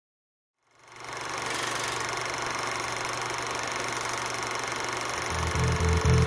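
A steady mechanical whirring hiss fades in about a second in and holds; near the end a low, pulsing bass beat of music comes in.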